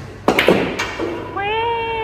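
A pool cue strikes the cue ball with a sharp click, and a moment later the cue ball clicks into another ball. Near the end a voice gives a drawn-out exclamation.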